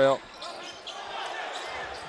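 Arena crowd noise during a live basketball game, with a basketball being dribbled on the hardwood court. A commentator's word cuts off right at the start.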